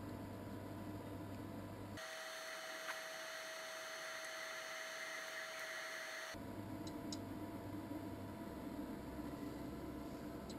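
Monoprice MP Select Mini 3D printer homing: a steady stepper-motor whine starts about two seconds in and stops about four seconds later as the print head moves down toward the build plate. A low hum runs before and after it.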